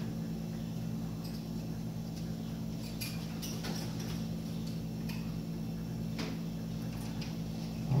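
Steady low hum with a handful of short, sharp clicks scattered through it, most of them clustered in the middle.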